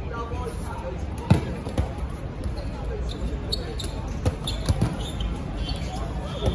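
Dodgeballs smacking off the court and players during play: a loud hit about a second in, another soon after, then a quick run of hits a little past the middle. Players' shouts and chatter run under the hits.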